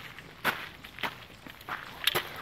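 Footsteps walking on a gravel path: three crunching steps a little over half a second apart.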